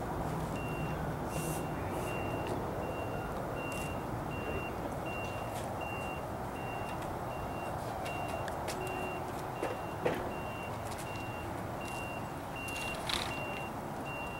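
A vehicle's reversing alarm beeping steadily at one high pitch, a little under two beeps a second, over a low steady rumble. A single knock is heard about ten seconds in.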